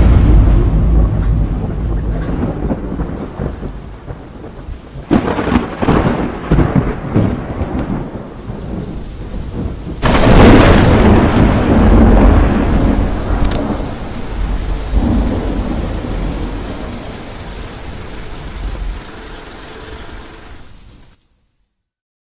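Thunderstorm: thunder rumbling over steady rain, with a sharp crack about five seconds in and a louder peal about ten seconds in, each rolling away slowly. The sound cuts off abruptly about a second before the end.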